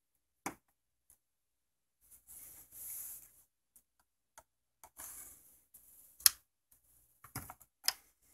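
Plastic snap clips of a flat-screen TV's back cover clicking loose as a flathead screwdriver pries along the seam, with scraping of plastic on plastic in between. Single clicks about half a second in and, loudest, just after six seconds, then a quick run of clicks near the end as one side comes free.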